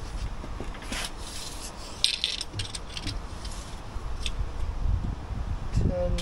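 Light metallic clinks, rattles and a few scrapes of hand tools being handled, the clearest scrape about two seconds in, over a steady low rumble.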